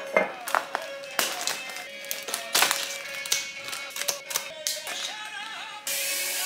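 Plastic cellophane and paper flower wrapping crinkling and crackling in many sharp snaps as it is handled and pulled off a bouquet of roses, over background music.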